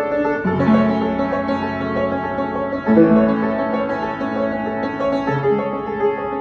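Piano playing slow sustained chords, with new low chords struck about half a second in and again about three seconds in.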